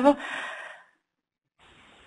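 A soft breathy exhale trailing off a spoken word, lasting under a second, then dead silence, then a faint intake of breath just before speech resumes.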